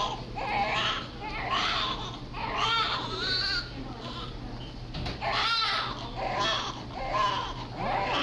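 Newborn baby crying in short wails repeated about once a second, over a low steady hum.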